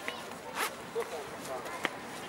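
Faint voices talking at a distance, with a couple of sharp clicks.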